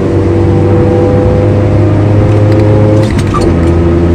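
Car engine heard from inside the cabin, pulling under throttle with a slowly rising note for about three seconds, then dropping in pitch, over steady road noise.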